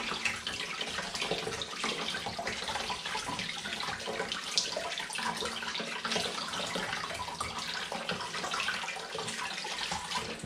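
Kitchen tap running into a stainless steel sink, with water splashing as hands rinse and rub linked black pudding sausages under the stream.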